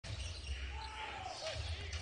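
Basketball being dribbled on a hardwood court, over a steady low arena hum and faint distant voices.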